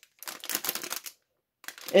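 Clear plastic packaging bag crinkling in the hands for about a second, a quick run of small crackles.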